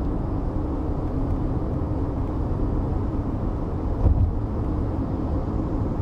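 Steady low rumble of road and engine noise inside a 2020 Toyota RAV4's cabin as it cruises on a highway, its 2.5-litre engine running at light load, with a slight bump about four seconds in.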